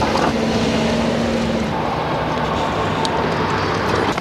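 Road traffic on the street alongside: a steady rushing noise of a passing vehicle, with a low engine hum that shifts pitch about halfway through.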